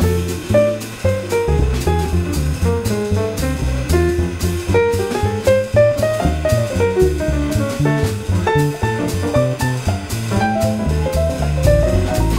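Instrumental jazz from piano, upright double bass and drum kit: the piano plays a busy melodic line over plucked double bass notes that step along, with the drums keeping a steady beat of cymbal strokes.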